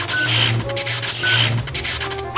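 Electric zapping sound effect: a crackling buzz over a low hum, swelling twice, each time with a short high beep.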